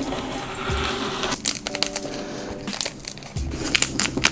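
Serrated knife sawing through a sheet of cork board: rough, crumbly scraping strokes, over background music.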